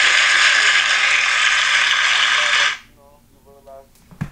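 A loud burst of harsh, hiss-like noise over the voice call, starting suddenly and cutting off sharply after about two and a half seconds. Faint voices follow near the end.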